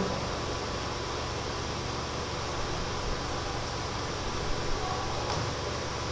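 Steady background hiss with a faint low hum: room noise on a lecture recording, with no clear event in it.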